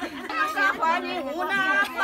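Several people talking at once in a group: chatter of voices, with no music.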